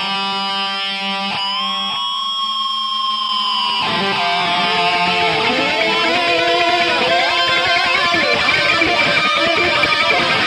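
Electric guitar lead solo: a note bent up and held for about two seconds, then quick melodic runs with string bends.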